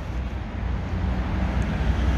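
Steady low rumble of outdoor background noise, with no sudden events.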